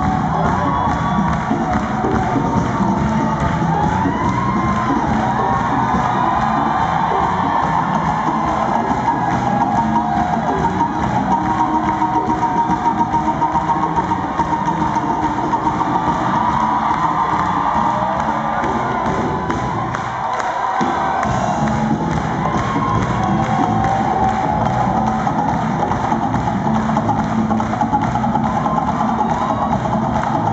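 Live band music driven by hand percussion, with a small drum struck with a stick, as voices sing and the crowd cheers and claps along.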